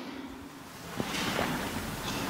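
A person breathing in, a soft hiss that swells from about a second in, with a light click just before it.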